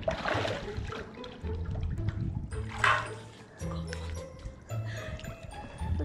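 Pool water sloshing and splashing as a swimmer climbs out at the edge, with two brief splashy bursts, near the start and about three seconds in. Background music plays underneath.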